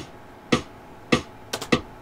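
Metronome click from tablature playback software ticking evenly at 100 beats a minute, about one click every 0.6 s, followed near the end by a quick run of three sharper clicks.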